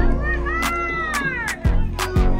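Background music with a steady beat: deep bass notes that slide down in pitch, one at the start and one near the end, sharp drum hits about twice a second, and a high, gliding melody line over the top.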